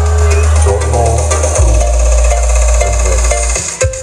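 Electronic dance music playing loud through a large outdoor sound rig with a bank of 24 subwoofers: long, heavy bass notes under a synth melody. The bass drops lower about one and a half seconds in and cuts out briefly near the end.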